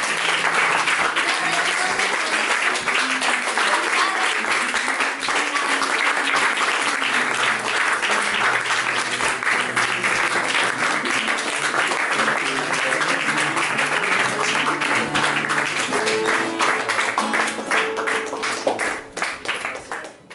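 Audience applauding, the dense clapping thinning to scattered claps and fading out near the end, with acoustic guitar notes still faintly heard underneath.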